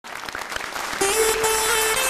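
A theatre audience applauding. About a second in, music starts with a long held note over the clapping.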